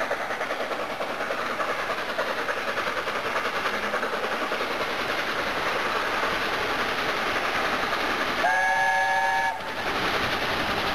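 Steam-hauled main-line train running with a steady rushing noise. About 8.5 s in the locomotive gives a short whistle blast, a chord of several tones lasting about a second, which cuts off suddenly.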